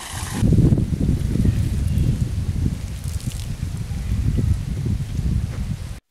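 Wind buffeting the microphone outdoors: an uneven low rumble that rises and falls, then cuts off suddenly at the end.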